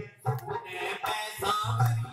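Live Hindu devotional bhajan music: a repeating hand-drum beat under a held melody line, with a man singing into a microphone over a PA.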